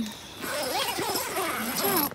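A dog whining and whimpering outside the tent, a run of rising and falling cries starting about half a second in, over the rustle of the tent's door fabric being closed.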